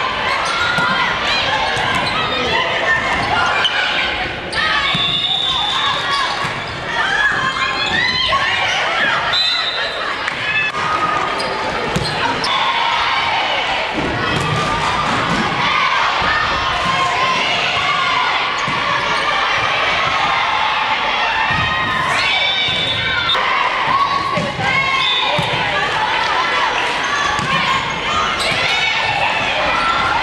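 Indoor volleyball play in an echoing gymnasium: voices of players and onlookers run throughout, over repeated thuds of the ball being hit and bouncing on the court.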